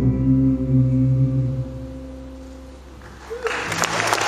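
A band's closing chord, with guitar, rings out and fades away over about three seconds. The audience breaks into applause near the end.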